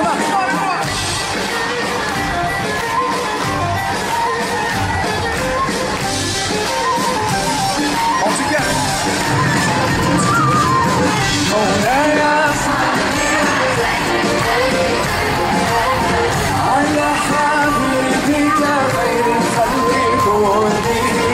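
Live band music with a sung melody, heard from among the audience in a large hall, the crowd faintly audible around it.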